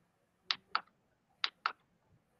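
Keystrokes on a computer keyboard: four sharp clicks in two quick pairs, about a second apart.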